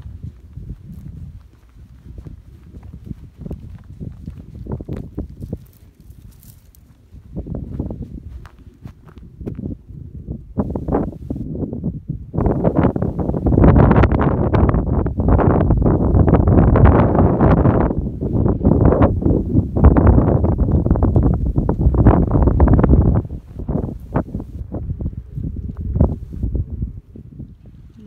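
Footsteps on a gravel track, a steady run of short crunching steps. For about ten seconds in the middle a much louder rushing noise covers them.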